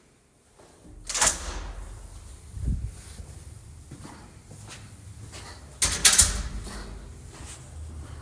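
Footsteps on a hard stone floor with the bumps and rumble of a handheld phone being carried. A glass door knocks shut about a second in, and there is another loud knock about six seconds in.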